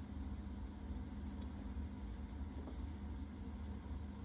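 Steady low hum with a faint hiss: room tone, with no speech.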